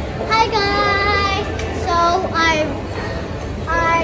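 A young girl singing, drawing out some notes for about a second.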